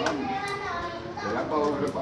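Background chatter of several people talking over one another, with fairly high-pitched voices.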